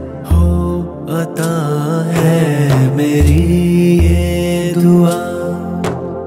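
Devotional dua song in naat style: a male voice singing long, wavering held notes over deep bass notes that come and go.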